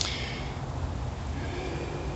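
Steady low rumble and hiss of outdoor background noise, with a brief soft hiss at the start and no distinct knock or tool sound.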